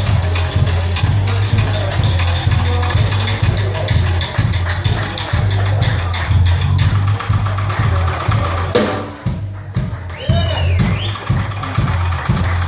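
A live blues band jamming instrumentally: electric keyboard, drum kit and electric bass over a steady beat. About nine seconds in, the sound thins out for a moment to mostly drums before the band fills back in.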